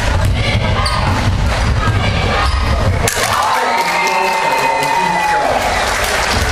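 A basketball bouncing on a hardwood gym floor amid the players' running and the hum of a crowded hall. In the second half a long steady high tone is held for about two seconds.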